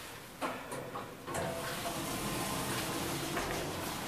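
Otis Gen2 elevator car and landing doors sliding open on arrival: a few light clicks about half a second in, then a steady rushing noise from about a second and a half in.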